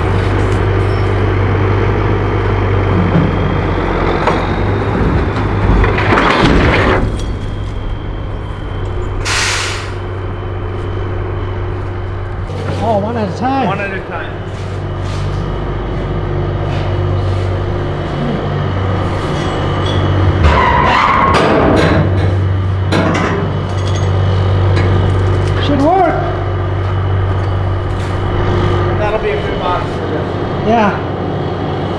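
Container-delivery truck's diesel engine idling steadily, with voices talking over it and a brief hiss of air about a third of the way in.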